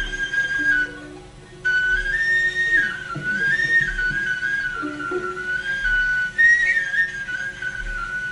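Nay (end-blown reed flute) playing a solo melodic passage in small stepwise turns, breaking off briefly about a second in, with softer lower instruments beneath.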